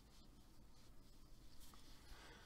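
Near silence, with the faint rustle and scrape of a crochet hook pulling Aran-weight acrylic yarn through stitches.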